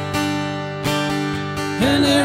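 Acoustic-electric guitar strummed, chords ringing between three strums about a second apart.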